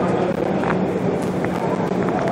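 Steady press-room background noise: a low hum under a haze of faint background voices, with a couple of light clicks.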